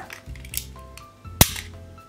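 A dulled snap-off utility knife blade being broken along its score line with pliers: one sharp, loud snap about one and a half seconds in, as a worn segment comes off to expose a fresh edge.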